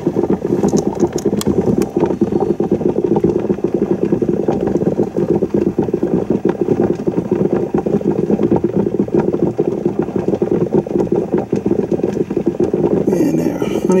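A steady low hum, like a fan or motor running, with a few faint clicks in the first couple of seconds.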